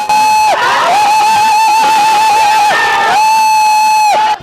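Cinema audience cheering and whooping, with a high, steady note held three times over the crowd noise, the middle one the longest.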